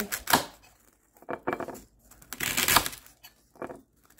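A block of green floral foam handled and pressed against a white ceramic bunny vase on a countertop: several short, separate scrapes and light knocks with quiet gaps between them, a longer cluster a little past the middle.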